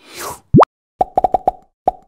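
Cartoon-style sound effects for an animated logo. A short whoosh comes first, then a very fast rising zip, the loudest sound, then a quick run of about six short pops.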